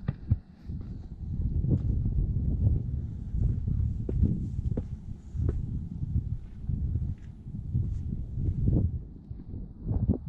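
Wind buffeting a camera microphone as a low, uneven rumble, with irregular footsteps on concrete.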